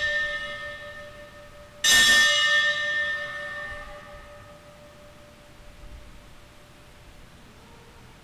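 Altar bell struck once about two seconds in, its clear ringing tones fading over a few seconds. The ring of a strike just before is still dying away at the start. The bell marks the elevation of the chalice at the consecration of the Mass.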